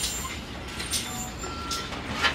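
Shop background noise with a few light clicks and knocks, and a faint steady high tone in the last half second.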